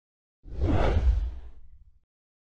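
Whoosh transition sound effect for an animated intro title, with a deep low end. It swells in about half a second in and fades away over the next second and a half.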